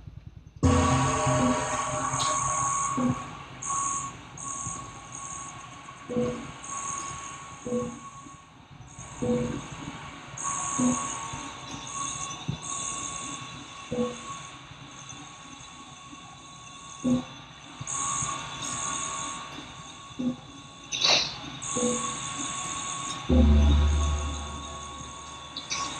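Electronic sonification from an environmental sensing device that turns sensor data into sound, played back over loudspeakers. A high shrill tone switches on and off in uneven blocks over a steady mid-pitched tone, with irregular short low blips and clicks.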